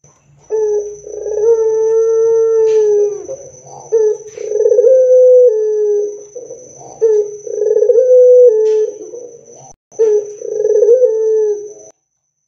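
Barbary dove (puter) cooing: about four long coos of two to three seconds each, each a rolling trill that settles into a held tone, with short breaks between them.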